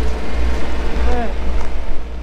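Wind rumbling on the microphone of a handheld camera, with faint snatches of voices nearby.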